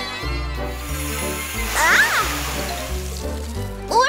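Cartoon background music with a changing bass line, over which a hissing spray of water swells about half a second in and fades within about two seconds. A short vocal exclamation comes near the middle.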